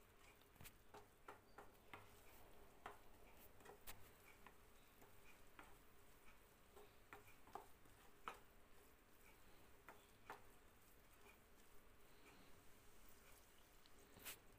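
Faint, scattered clicks and scrapes of a spatula stirring a thick masala paste in a non-stick pan.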